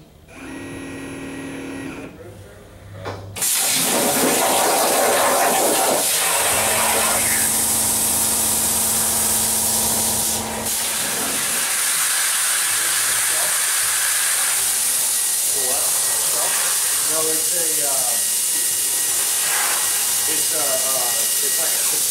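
Torchmate 4x4 CNC plasma table's plasma torch: a loud, steady hiss starts suddenly about three seconds in and carries on, with a lower steady hum for a few seconds in the middle.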